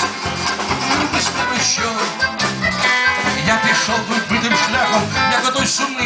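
Live band music: accordion and electronic keyboard playing an instrumental passage between sung lines, over a steady beat.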